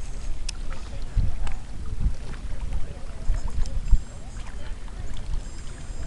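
Wind gusting on the microphone, an uneven low rumble, over small waves lapping at a rocky lakeshore.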